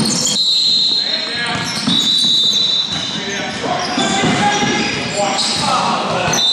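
Amateur indoor basketball game: players' voices calling out and the ball bouncing on the court, all echoing in a large hall, with several brief high-pitched squeaks.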